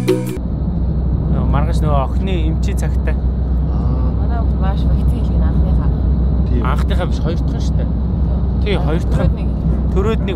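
Steady low road and engine rumble inside a moving van's cabin, with a man talking over it in short bursts. Background music cuts off just after the start.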